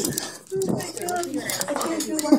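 Young people's voices laughing and talking excitedly.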